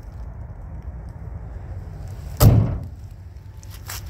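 A single loud bang from an aluminium slam-latch storage bay door on a motorhome, a little over halfway through, ringing briefly, over a steady low rumble.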